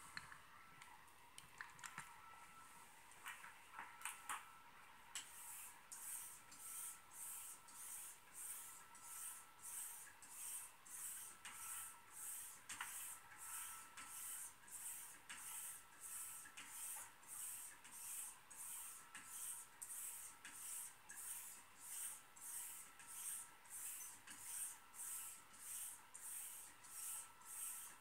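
A Henckels stainless straight razor being stropped on a hanging strop: even swishes of the blade, close to two a second, stroke after stroke, as extra stropping to refine the edge after honing. A few light knocks come before the strokes begin about five seconds in.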